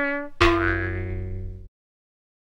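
Music from a comic production-logo jingle. A held trumpet note fades out, then a low, resonant comic sound-effect note sounds about half a second in and dies away. It cuts off suddenly near the end.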